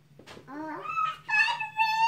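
A young boy's high-pitched, drawn-out wordless whine, sliding up in pitch about half a second in and then held level as a long squeal.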